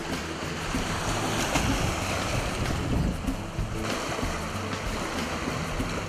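Sea waves washing against a rocky shore, with wind rumbling on the microphone.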